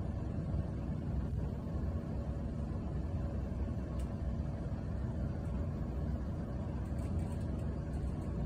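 ThyssenKrupp TE-GL traction service lift car travelling down its shaft: a steady low rumble of ride noise in the cabin. A faint tick about halfway.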